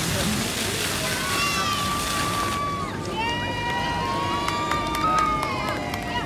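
Dancing-fountain water jets splashing with a steady spray hiss that cuts off suddenly about two and a half seconds in as the jets shut down.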